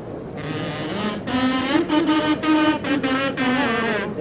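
A kazoo-type carnival pito (pito de caña) playing a short tune: a buzzing, nasal tone in about five short phrases, starting after a brief hiss.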